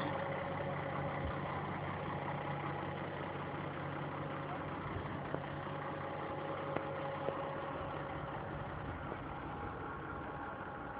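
Ford 7840 tractor's diesel engine idling steadily, with a few faint clicks in the second half.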